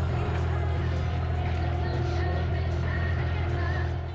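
Background music with a steady beat, over the low, steady drone of a boat's engine under way; the drone drops away at the very end.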